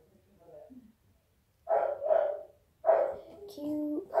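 A pet dog barking three short times, about two to three seconds in, followed by a steady held note near the end.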